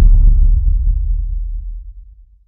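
A deep, rumbling bass boom from a logo intro's sound design, hit just before and slowly dying away, fading out near the end.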